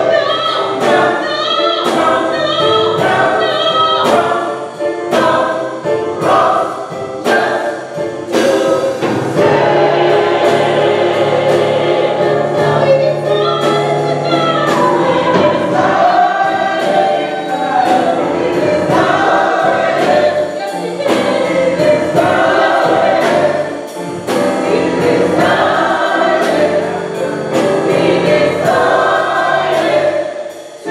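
Small gospel church choir singing a song together, with a steady beat of sharp strikes running under the voices.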